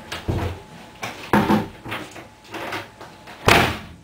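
Several knocks and thumps, then a door slammed shut about three and a half seconds in, the loudest sound here.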